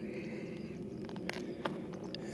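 Footsteps on the rocky gravel floor of a dry wash, soft scuffing with a few short sharp clicks in the second half.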